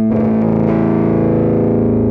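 Live indie rock band playing: a distorted electric guitar through effects holds a sustained chord, which changes about two-thirds of a second in.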